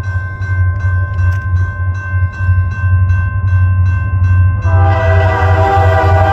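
EMD GP40-2LW diesel locomotives climbing, with a steady low engine drone. About three-quarters of the way through, the lead locomotive's multi-tone air horn starts sounding and holds, the loudest sound.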